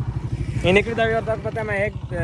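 An engine running steadily, heard as an even low throb, with a person talking over it from about halfway through.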